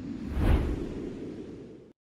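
A whoosh transition sound effect: a rush of noise swells to a peak with a low boom about half a second in, then fades away and cuts off abruptly just before the end.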